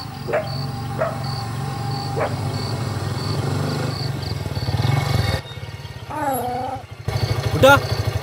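Motorcycle engine running steadily at a low idle, with a dog barking a few times in the first couple of seconds and giving a longer call about six seconds in. A faint high chirp repeats about twice a second behind it.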